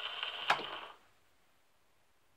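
The last notes of a 78 rpm record played on a wind-up acoustic gramophone dying away, with one sharp click about half a second in. The sound then cuts off suddenly just under a second in.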